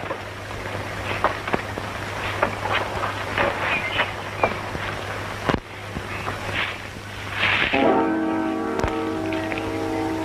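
Background film music with crackle and a steady low hum from an old film soundtrack; about eight seconds in, a held chord comes in and lasts to the end.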